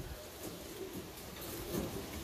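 Faint, low cooing from a tippler pigeon in a cage.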